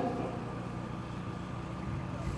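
Steady low rumble of an engine idling, with a faint even hum over it and nothing sudden.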